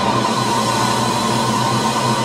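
Symphony orchestra, choir and soprano voices holding a loud sustained chord at the close of a cantata movement, with a high note held on top with a slight vibrato.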